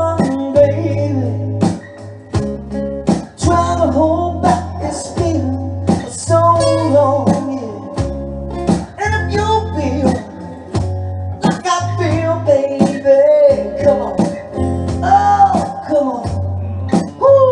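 A live band playing a song: steady drum hits, a bass line and guitar, with a gliding melody line over the top.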